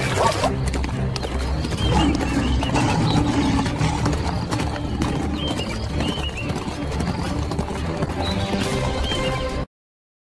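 Wild horses fighting: hoofbeats and whinnies, with water splashing in the first half-second, over background music. The sound cuts off suddenly near the end.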